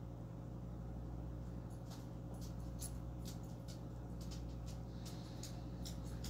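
Faint scattered clicks and light scratching of hand work on the wooden mantel trim, over a steady low room hum.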